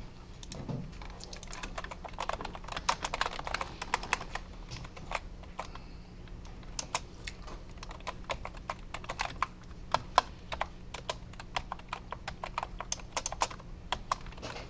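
Typing on a computer keyboard: irregular runs of quick key clicks with short pauses between them.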